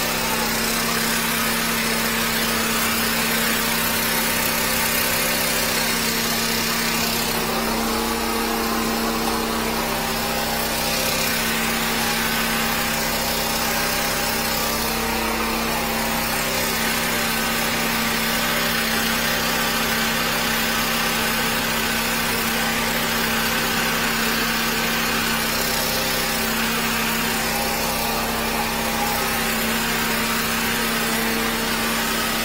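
Drain-cleaning machine running steadily at a constant speed: an even droning hum with a hiss over it.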